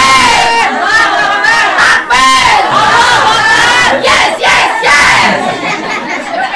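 A group of women shouting and cheering together, loud and high-pitched, many voices overlapping in a rally-style cheer.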